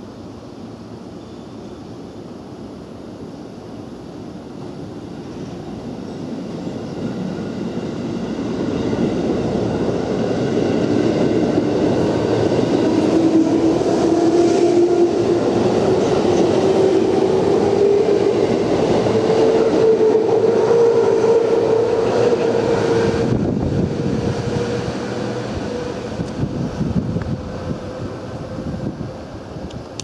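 JR West electric train passing through the station: the rumble of its wheels on the rails builds up, is loudest as the cars go by, then fades as it draws away. A whine climbs steadily in pitch through the loudest part, and there are a few sharp clacks from the wheels.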